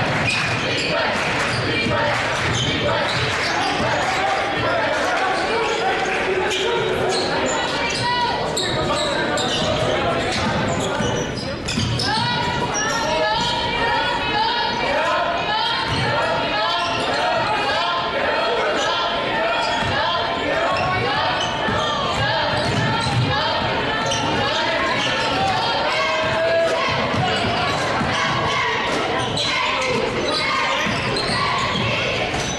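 A basketball dribbled on a hardwood gym floor during play, under steady crowd chatter and shouting voices, all echoing in a large gymnasium.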